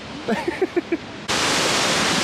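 A short laugh, then, starting abruptly about a second in, a loud steady roar of rushing water from a large glacial waterfall close by.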